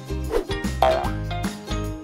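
Upbeat children's background music with a steady beat, with a short cartoon sound effect about a second in: a quick gliding tone.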